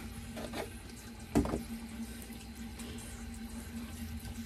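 Bathroom sink tap left running into the basin, a steady flow while the water is still heating up. There is a brief louder knock about a second and a half in.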